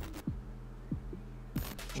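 A low, heartbeat-like pulse of thumps, each dropping quickly in pitch, over a steady low hum, with a couple of brief swishes: sound design from a football kit promo video's soundtrack.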